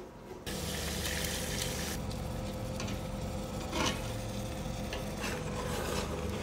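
A metal spoon stirs egusi soup in a pot on the heat, starting about half a second in, over a steady sizzle. The spoon scrapes and clinks against the pot now and then.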